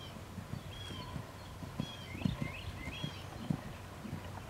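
Hoofbeats of a horse moving over a sand arena: dull, uneven thuds about two a second.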